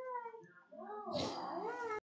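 Faint, high-pitched voice sounds with rising and falling pitch: a short one at the start, then a longer one from about a second in.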